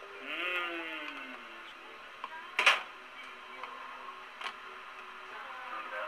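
A person's wavering, gliding vocal sound in the first second, then a sharp clack about two and a half seconds in and a lighter click later, over a faint steady hum.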